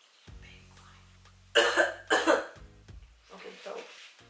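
A woman coughing twice, loudly and sharply, over background music, followed by softer throat sounds near the end.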